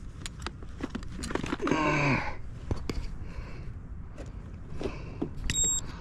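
Clicks and knocks of an RC boat's hatch and battery bay being handled, with a short voiced sound about two seconds in. Near the end, a brief high electronic beep from an infrared temperature gun taking a reading.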